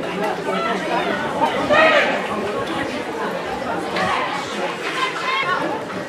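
Several voices talking over one another in indistinct chatter, with a few louder calls standing out.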